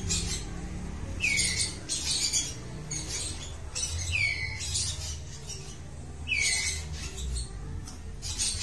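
White-rumped shamas calling in an aviary: a series of short, hissy calls about once a second, several ending in a quick falling note.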